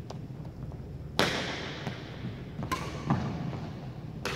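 Badminton racket hitting a shuttlecock, two sharp hits about a second and a half apart, each ringing out in the echo of a large gym hall, with a duller knock between.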